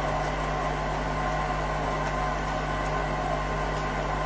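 Room tone: a steady low hum with a faint hiss and no distinct events.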